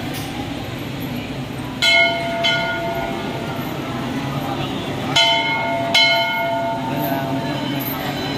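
A temple bell struck four times, in two pairs, each strike ringing on for a second or more with several clear tones, over steady crowd noise.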